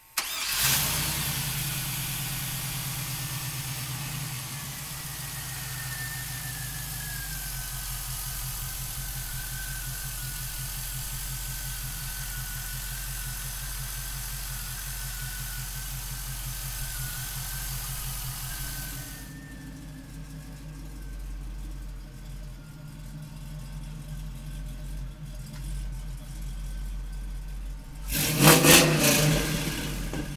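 A 5.3-litre LS V8 starting up and settling into a steady idle, then revved briefly near the end.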